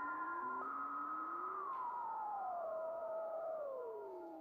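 Electronic synthesizer music: a few sustained pure tones, one rising briefly early on, then several sliding slowly down in pitch together and fading toward the end.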